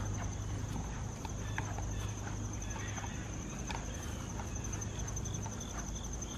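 Insects trilling in a steady, high, finely pulsing tone, with footsteps on grass and scattered light clicks over a low steady hum.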